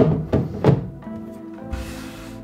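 The cover of a resin 3D printer being set down onto the printer body, three quick hollow thunks in the first second, over background music.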